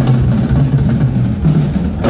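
Live rock band playing loudly, the drum kit to the fore with bass notes held beneath.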